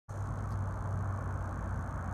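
Steady low rumble of outdoor background noise, even in level throughout.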